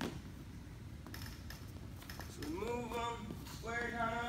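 A voice speaking two short untranscribed phrases in the second half, over low room noise of a gym hall, with a single light knock at the very start.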